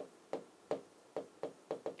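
A pen tip tapping against the lecture board several times, light and irregular.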